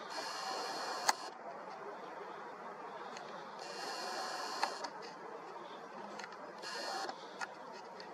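The built-in lens motors of a Nikon Coolpix P1000 superzoom camera whir in three short spells as the lens zooms in and the autofocus hunts, catching the near branch instead of the moon. Two sharp clicks come with the first two spells.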